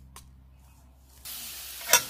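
Dried chiles frying in hot oil in a pan: a steady sizzling hiss starts abruptly about a second in. A metal spoon clinks against the pan near the end.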